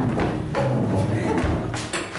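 Footsteps and thuds of several performers getting up from chairs and moving across a stage, with chairs knocking, over music.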